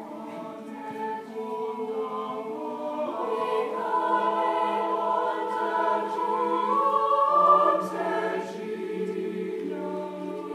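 Mixed choir of women's and men's voices singing sustained chords, swelling louder to a peak about seven and a half seconds in, then easing off.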